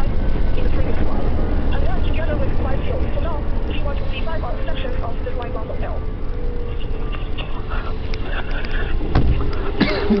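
Train running at speed, heard from inside the carriage: a heavy low rumble with a motor whine that slowly falls in pitch. Near the end a sudden loud rush with a falling pitch as a train passes close the other way.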